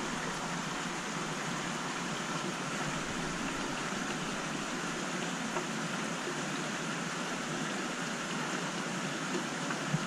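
Steady rushing hiss of water moving through a large aquarium's filtration and drains, even throughout, with one brief knock near the end.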